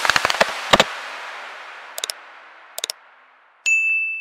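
Animated end-card sound effects: a quick run of typing clicks, then two short clusters of clicks about a second apart, then a bright bell ding that rings on.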